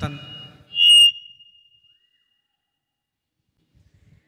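A brief high-pitched squeal of microphone feedback through a PA system, about a second in, right after a spoken word. It rises suddenly to a single steady shrill tone and rings out over about a second.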